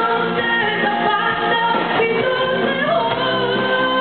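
Live pop-rock band playing with a woman singing the lead vocal through a microphone, electric guitar and drums behind her. The voice glides and holds long notes over a steady band sound.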